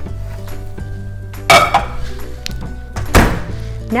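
Background music, with two thunks of a microwave oven's door, about a second and a half and three seconds in.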